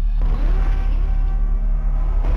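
Cinematic title sound effect: a deep, steady low rumble with a swelling rush of noise that comes in about a fifth of a second in.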